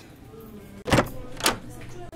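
A door being opened, heard as two short sharp clicks about half a second apart.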